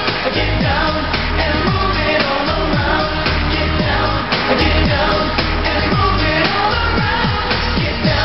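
Male pop vocal group singing live into handheld microphones over a dance-pop backing track, with a steady beat and bass notes that repeatedly slide downward.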